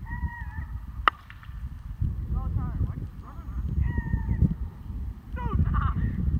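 A plastic wiffle ball bat hitting a wiffle ball: one sharp crack about a second in, over a steady low rumble, with voices calling out afterwards.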